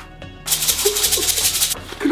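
Rainbow sprinkles shaken out of a container onto a giant donut: a loud, rapid rattling hiss lasting a little over a second, starting about half a second in.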